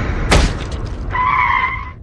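Sound effects of a car striking a pedestrian: a sharp impact about a third of a second in over a loud rumbling car noise, then a tyre screech lasting most of a second before it fades.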